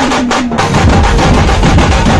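Large dhumal band drums beaten with sticks in a fast, loud run of strokes that grows denser about half a second in.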